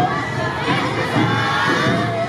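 A group of Awa odori dancers shouting their chant calls together, many high voices overlapping in a loud, continuous chorus.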